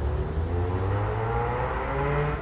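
A motor vehicle's engine accelerating, its note rising steadily, over a low traffic rumble.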